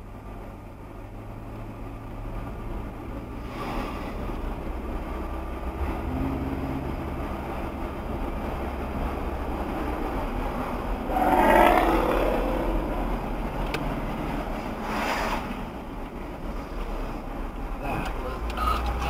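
A car driving, heard from inside the cabin: a steady low engine and road hum. About eleven and a half seconds in a brief, louder pitched sound rises over it.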